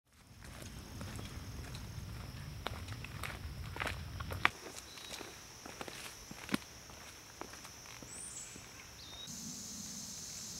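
Footsteps on a dirt forest trail, an irregular series of light crunches and snaps with a few louder ones, over a steady high insect drone that grows louder near the end.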